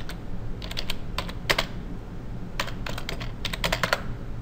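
Computer keyboard keystrokes as a command is typed: a few separate clicks in the first half, then a quicker run of clicks near the end.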